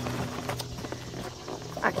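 Faint handling of cardboard boxes, a few light taps and rustles, over a low steady hum.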